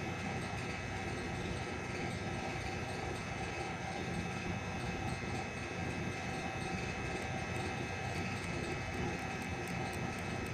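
A steady mechanical hum: an even rumble with several constant tones layered over it, not changing in level.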